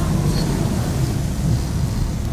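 Low, steady rumble of a car engine heard from inside the cabin.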